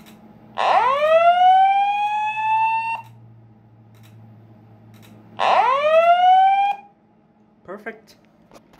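Slow-whoop evacuation tone of a voice evac fire alarm message from a System Sensor SpectrAlert Advance speaker-strobe: two rising whoops. The first climbs for about two and a half seconds. The second starts about five seconds in and cuts off abruptly after just over a second, as the alarm system is reset.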